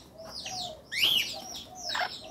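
Birds chirping: a quick run of short, high chirps that sweep up and down, several a second, over a few soft low calls.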